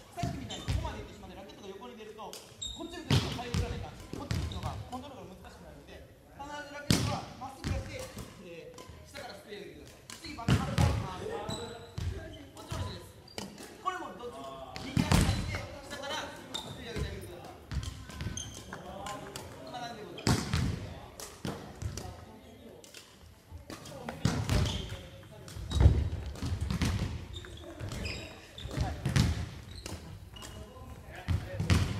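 Badminton racket strokes in a hand-fed lob drill: sharp cracks of the strings on shuttlecocks, with loud footfalls thumping on a wooden gym floor every few seconds, echoing in a large hall.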